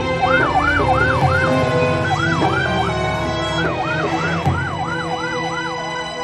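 Emergency vehicle sirens in a fast rising-and-falling yelp, two sirens at different pitches overlapping, the higher one sweeping about three times a second. Steady music plays underneath.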